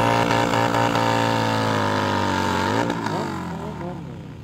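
Motorcycle engine held at high, steady revs during a burnout. Near the end the revs dip and swoop, and the sound fades out.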